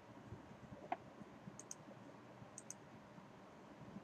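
Faint computer mouse clicks over quiet room hiss: one sharper click about a second in, then two quick pairs of light clicks about a second apart.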